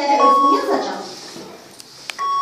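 A voice speaking with drawn-out vowels for about the first second, then fading off; a faint short click near the end.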